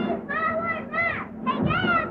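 A small boy's high voice in a run of short cries that rise and fall in pitch, without clear words.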